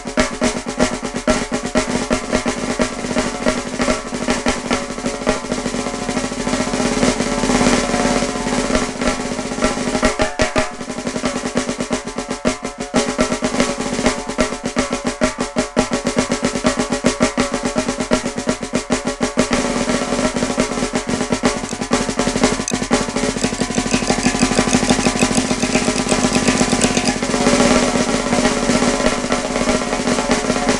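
Snare drum played very fast with drumsticks: a continuous stream of rapid strokes and rolls, with only momentary breaks.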